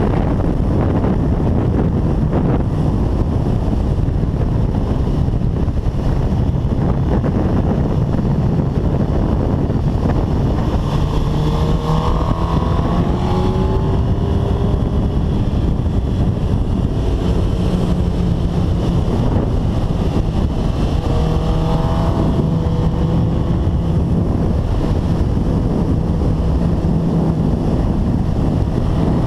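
Heavy wind noise on the camera microphone of a 2005 Suzuki GSX-R1000 inline-four sport bike at track speed, largely masking the engine. The engine's pitch can be heard rising under acceleration twice, about twelve seconds in and again around twenty-two seconds.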